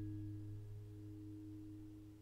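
Simon & Patrick Woodland Pro Folk acoustic guitar chord ringing out after the last strum, a few sustained notes, the low one strongest, slowly fading away.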